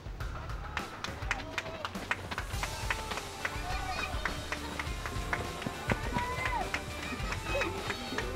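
Footsteps of a pack of runners on a dirt road, many quick irregular steps, with voices and calls from the people around, under background music.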